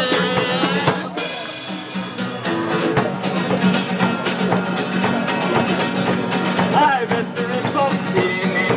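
One-man band playing: a strummed acoustic guitar with a steady bass-drum beat from the drum worn on his back, about two strikes a second from about three seconds in. Singing comes in near the end.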